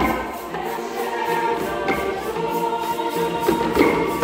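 Mixed choir singing sustained chords, with hand drums striking a few accents, more of them near the end.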